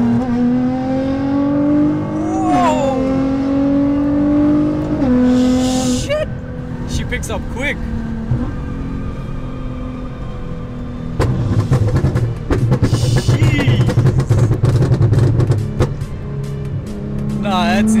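Nissan R35 GT-R's twin-turbo V6 with a straight-pipe exhaust, heard from inside the cabin, pulling hard at full throttle from highway cruising speed. Its pitch climbs steadily and drops at quick upshifts about two and a half and five seconds in. From about eleven seconds a loud, rough run of exhaust puffs, cracks and bangs follows.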